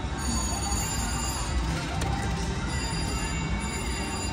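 Electronic ringing tones from slot machines over the steady din of a casino floor, with a short click about two seconds in.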